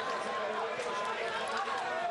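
Roadside crowd cheering and shouting, many voices mixed together at a steady level.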